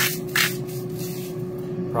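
Two short rasping bursts from a pepper grinder being twisted with its cap still on, so no pepper comes out, over a steady low hum.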